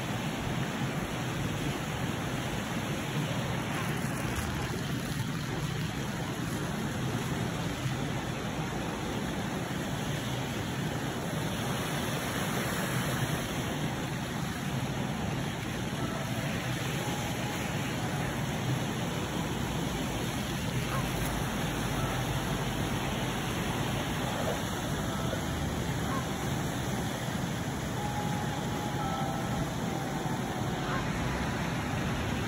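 Steady rushing outdoor background noise, with a few faint short whistle-like tones in the second half.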